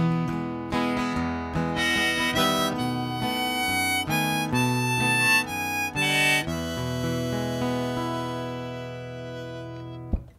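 Harmonica in a neck rack playing the closing melody over strummed acoustic guitar, ending the song on a held chord that fades out over the last few seconds.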